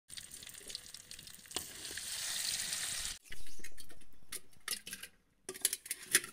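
Fish pieces deep-frying in oil in a wide aluminium pan, a steady hissing sizzle that swells slightly and cuts off abruptly about three seconds in. It is followed by a louder sound that fades away over about two seconds, then a few light clicks near the end.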